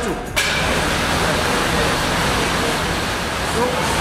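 Air bike's fan wheel rushing with a loud, steady whoosh as the rider sprints all-out on it; the rush sets in suddenly about half a second in.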